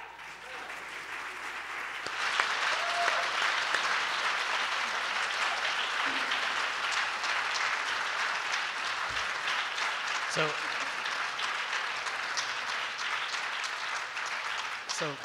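Audience applauding, swelling about two seconds in and then holding steady, with a few brief voices in the crowd.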